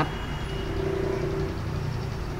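Steady low background rumble and hum, with a faint held tone in the middle of the pause.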